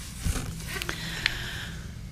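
A pause in speech filled with low room hum, faint rustling and a few small clicks as a book is opened in front of the microphones.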